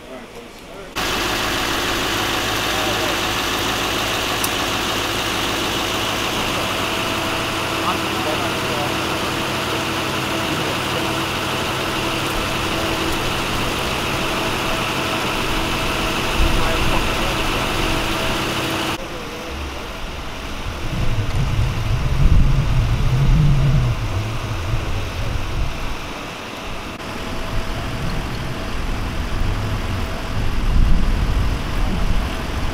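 A motor vehicle's engine idling steadily, cutting off abruptly about two-thirds of the way through. After it comes uneven low rumbling, loudest a little later.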